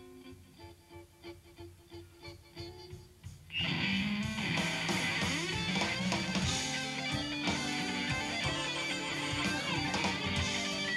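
Live electric blues band: an electric guitar picks soft notes over a sustained chord, then about three and a half seconds in the whole band comes in loud with guitars, bass and drums.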